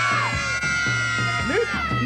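A crowd of young children shouting their own names all at once, a loud held group shout that breaks off shortly before two seconds.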